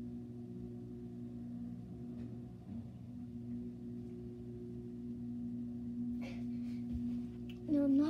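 A steady low electrical hum made of several even tones, with a few faint knocks from someone moving about.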